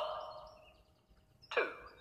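An echoing voice counting: the tail of 'one' trails off at the start, and 'two' comes about one and a half seconds in. Faint birdsong chirps run between the words.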